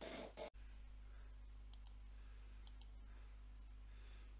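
Near silence on a phone-call recording: a steady low hum with a few faint clicks. A brief burst of noise at the very start cuts off abruptly after half a second.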